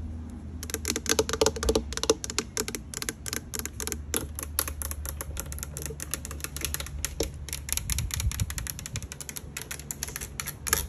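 Long acrylic fingernails tapping quickly on a wet car side mirror, its glass and painted housing, in rapid sharp clicks like typing. A low steady hum runs underneath.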